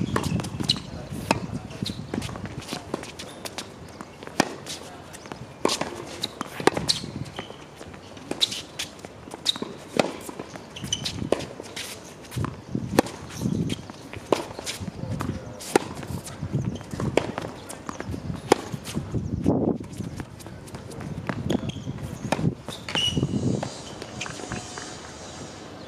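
Tennis rallies on a hard court: a string of sharp racket strikes and ball bounces at irregular intervals, with players' footsteps.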